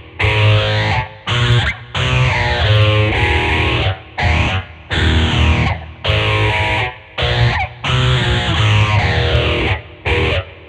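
Schecter Omen 6 electric guitar played through a Peavey Vypyr VIP amp with heavy distortion, chugging a metal riff in short phrases that cut off abruptly about every second. A sweeping effect moves through the tone.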